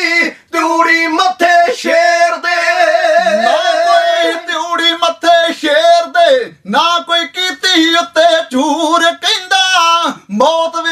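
Men singing Punjabi kavishri unaccompanied, in long held and bending vocal lines with short breaths between phrases.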